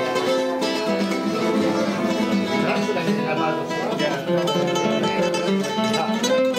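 Nylon-string acoustic guitar played live, a run of plucked notes and chords in a flamenco style, with people talking in the background.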